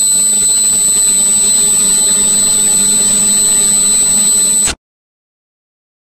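A loud, harsh, distorted electronic buzzing drone held at one low pitch, with a thin high whine over it. It cuts off suddenly a little before five seconds in.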